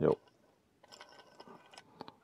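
Faint light clicks and rattles of small plastic model-kit parts being handled, starting about a second in, after a brief spoken "jo".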